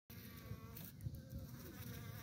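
Faint buzzing of honeybees at the hive entrance, with a soft low thump about halfway through.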